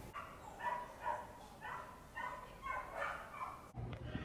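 Dogs barking in the distance: a run of faint barks, a couple a second, that cuts off abruptly just before the end.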